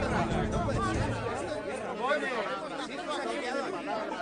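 A crowd of people talking at once, an indistinct chatter of many overlapping voices. Background music fades out about a second in.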